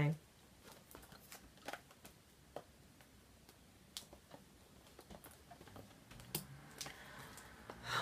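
Faint scattered clicks and rustles of a small cardboard perfume box and a pair of scissors being handled.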